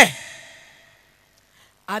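A short pause in speech: a spoken phrase ends with a breathy exhale that fades out within about half a second, then near silence until the voice starts again just before the end.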